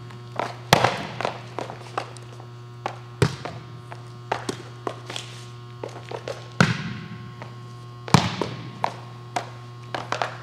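Athletic shoes on an indoor court during volleyball footwork: quick steps, shuffles and taps with four heavier landings that thud and echo briefly, over a steady low hum.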